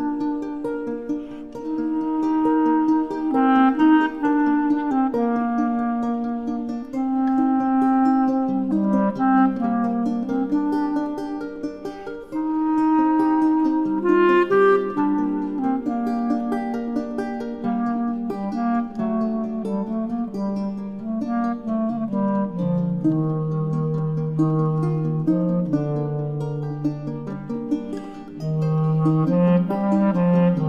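Clarinet and lute duo playing a slow, singing melody: the clarinet carries long held notes over plucked lute. Near the end the clarinet line drops into its low register.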